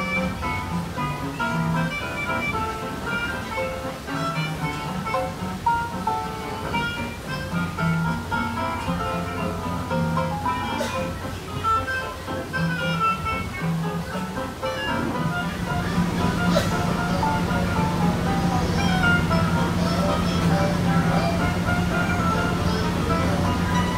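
Background music: a steady run of quick pitched notes over a bass line. A steady low hum joins it about two-thirds of the way through.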